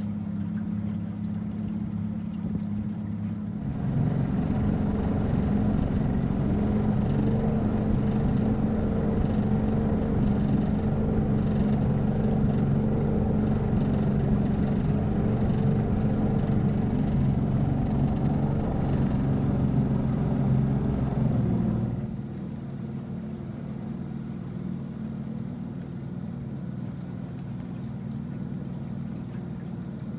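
Boat motor running steadily with a low, even hum. It gets louder about four seconds in and drops back abruptly after about twenty seconds.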